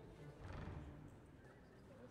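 Grand piano being rolled on its casters across a wooden stage floor: a faint low rumble, loudest about half a second in.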